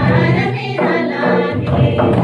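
Music with a group of voices singing a song together in chorus, going on steadily.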